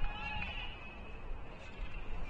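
A person's voice calling out, with one drawn-out call in the first half second, then quieter.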